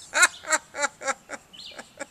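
A man laughing: a run of short 'ha' bursts, about three a second, loudest at first and growing fainter toward the end.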